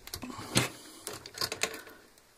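Several sharp clicks and taps as small metal double-cap rivet parts and a pair of pliers are handled and brought onto a strap at a workbench, the loudest click about half a second in and a quick cluster of them past the middle.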